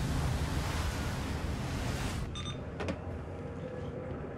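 Heavy seas breaking and wind rushing in a dense, steady roar that cuts off abruptly about two seconds in. A much quieter low hum with a brief high-pitched tone follows.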